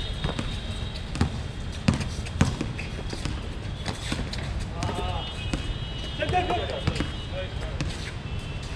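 Basketball bouncing on a hard outdoor court: scattered sharp bounces, the loudest about two seconds in, with players' voices calling out briefly after the middle.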